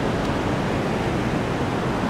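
Steady rush of heavy surf breaking on a rocky shore, the sea rough with a typhoon swell.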